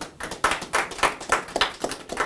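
A small group of people clapping: irregular, overlapping hand claps.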